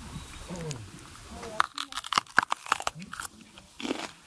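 A person biting and chewing a freshly picked raw green pepper: a quick run of sharp crunches starting about one and a half seconds in.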